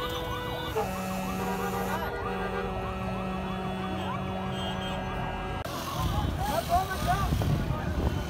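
A vehicle horn held down for several seconds, one steady multi-note tone with a short break about two seconds in, over a crowd's shouting voices. About six seconds in the horn stops and louder crowd and street noise takes over.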